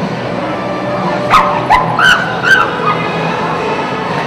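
A pit bull barking four times in quick succession, high and yappy, starting about a second in, over the steady hubbub of a crowded hall.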